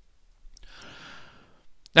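A person's breath drawn in, a soft hiss lasting about a second, just before speech begins at the very end.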